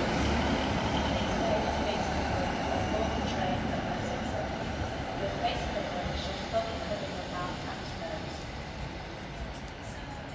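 Class 156 diesel multiple unit moving off along the platform, its underfloor diesel engines giving a steady low rumble that fades away, with a few faint clicks partway through.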